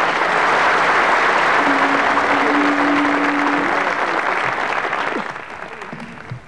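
Audience applauding in a large auditorium hall; the applause thins out in the last second or so. A steady low tone sounds for about two seconds in the middle.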